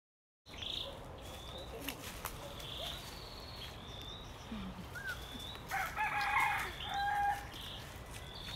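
A rooster crowing once, the loudest sound, starting a little under six seconds in and ending on a held lower note. Short high-pitched chirps repeat about once a second in the background.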